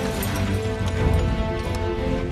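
Film score music with long held notes over a low rumble.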